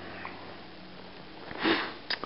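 A single short sniff, a quick breath drawn in through the nose, near the end after a second and a half of quiet room tone.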